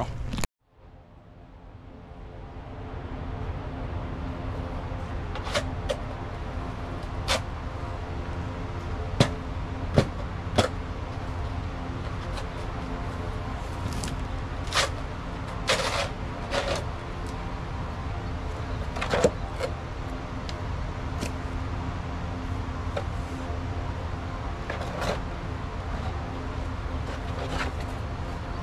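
A shovel digging dirt and silage muck, with a dozen or so sharp irregular knocks and scrapes of the blade against ground and concrete, over a steady drone.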